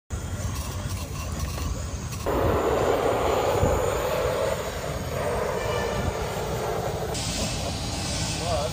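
Aerosol spray-paint can hissing as paint is sprayed onto a plastic stadium seat, stepping up sharply about two seconds in and turning brighter near the end, over a low wind rumble on the microphone.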